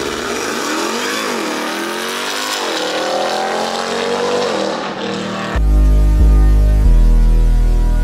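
Ram 1500 TRX pickup's supercharged V8 accelerating hard, its pitch climbing with two dips as it shifts up. About five seconds in it gives way to music with a heavy bass beat.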